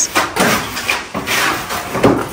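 Indistinct talking in a small room: a short stretch of conversation that comes out as no clear words.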